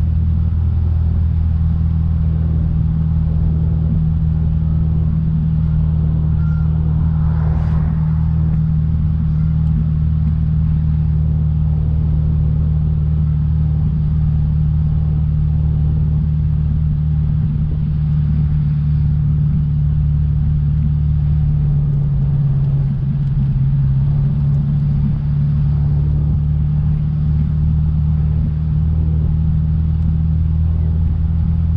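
1948 Chrysler Town & Country's straight-eight engine running steadily under way, heard from the driver's seat. The engine note drops briefly about two-thirds of the way through and comes back up. A brief whoosh sounds about a quarter of the way in.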